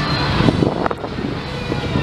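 Steady outdoor background noise with a low rumble, crossed by two brief knocks about half a second and a second in.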